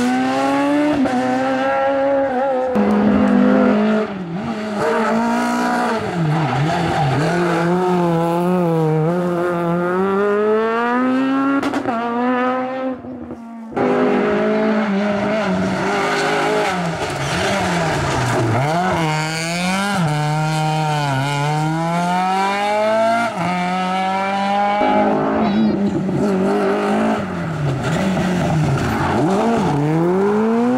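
Rally cars driven flat out on a tarmac stage: the engine note climbs and drops again and again as they rev through the gears and lift off for corners. The sound dips briefly about thirteen seconds in, then comes back abruptly at full volume.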